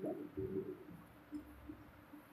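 Faint low bird calls: a few short notes about half a second in and again just before the middle.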